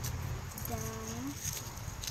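Speech only: a child's voice saying the dog command "Down" once, about a second in, over a steady low background rumble.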